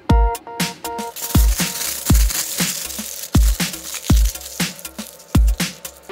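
Background electronic music: a heavy kick-drum beat with short synth notes near the start.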